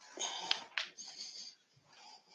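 A person's breath: two short, soft breathy puffs, with a small sharp click about half a second in.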